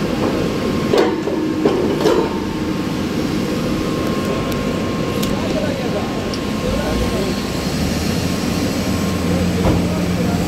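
Drilling rig floor machinery running steadily: a low, even hum with a faint steady whine. Three sharp metallic clanks come in the first couple of seconds and another near the end.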